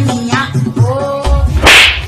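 A song with a singing voice plays and stops about a second in. Near the end comes a short, loud swish, a whip-like comic sound effect, over a low rumble.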